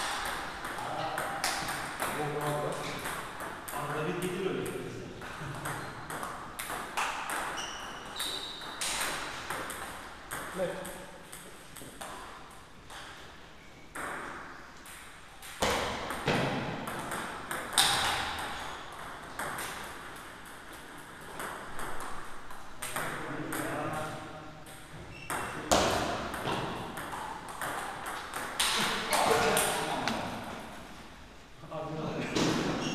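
Table tennis rallies: the ball clicks sharply off the rackets and the table in quick, irregular runs, with pauses between points. Voices murmur in the hall.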